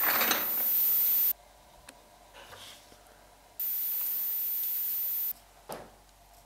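Wooden coloured pencils rattling and clattering against one another in a tin as a hand sorts through them. The rattling cuts off abruptly a little over a second in. In the second half, a pencil is turned in a small metal hand sharpener, a dry scraping of wood being shaved.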